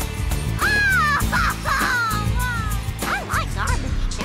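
Band music with acoustic guitars, piano and drums. From about half a second in, a high melodic line slides up and down in pitch over the accompaniment.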